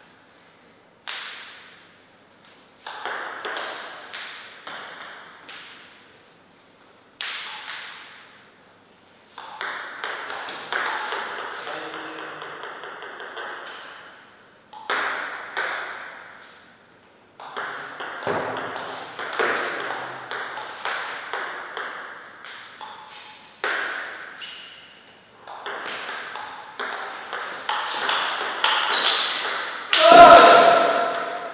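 Table tennis ball clicking back and forth between paddles and table in quick rallies, several runs of sharp clicks with short pauses between points.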